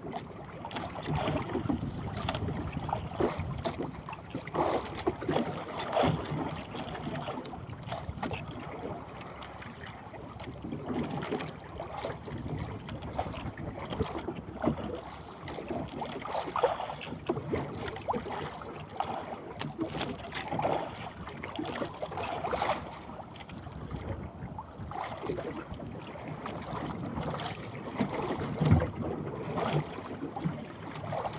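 Wind and choppy sea water around a small outrigger boat, with wind buffeting the microphone in irregular gusts.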